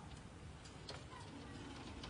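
Faint background noise with a low rumble and scattered, irregular light clicks.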